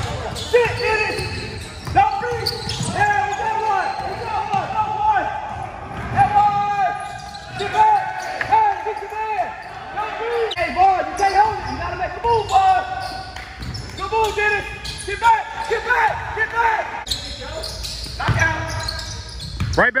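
A basketball game in play on a hardwood gym floor: the ball bounces repeatedly and voices carry through the echoing hall. Near the end a loud shout of "back, quick quick quick" rings out.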